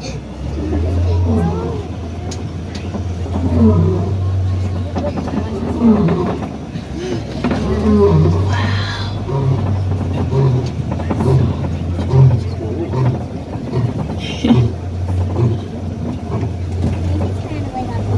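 African lion roaring: several long, deep moaning calls, then a run of short grunts about two a second that die away. The steady low hum of the idling safari truck's engine runs underneath.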